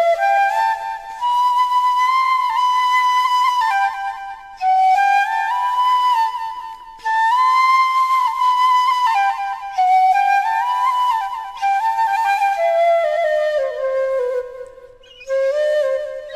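Background music: a solo flute melody in several phrases that climb and fall in steps, with short breaks between phrases.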